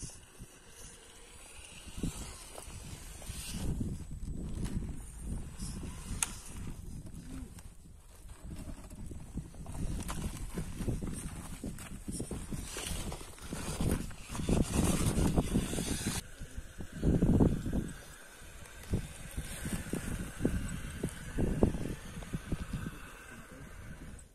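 Axial Capra radio-controlled rock crawler clambering over granite. Its tyres and chassis make irregular knocks, scrapes and crunches on rock and grit, loudest in bursts past the middle.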